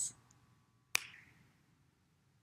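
A single sharp finger snap about a second in, with a short echo dying away after it.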